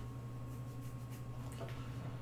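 Quiet room tone: a steady low hum with a faint, thin high-pitched tone running under it.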